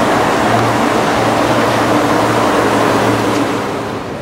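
Walt Disney World monorail train passing overhead on its beam: a steady rushing noise with a low hum, fading somewhat near the end.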